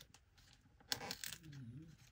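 Paper being torn against the edge of a ruler, a short crackly rasp about a second in; the paper has a plasticky coating on its back that makes it hard to tear. A brief hummed voice sound follows.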